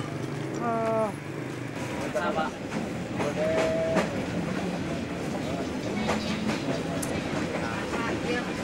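Steady rumble of a moving passenger train, heard from inside the carriage, with faint clicks from the wheels on the rails.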